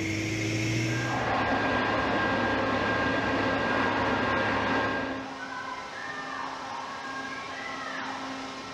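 Engine and machinery noise around a ship's flooded well deck. A low engine hum gives way about a second in to a louder rushing noise carrying steady whining tones, which drops to a quieter hum about five seconds in.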